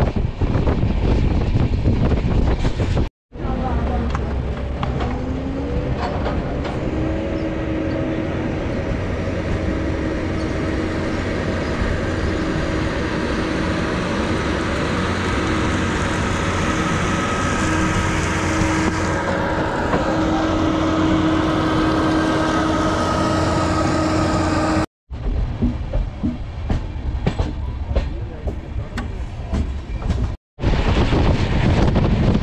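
Passenger train running, heard from an open coach doorway: rushing wind and rail noise, with a steady hum that rises in pitch a few seconds in and then holds. The sound cuts out abruptly about 3 s in and again about 25 s in.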